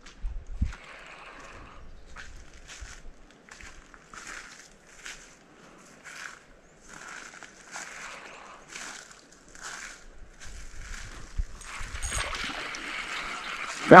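Small scattered rustles and scrapes, then near the end a louder, denser rushing splash as a hooked largemouth bass thrashes at the surface.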